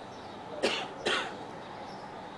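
A man coughing twice, about half a second apart.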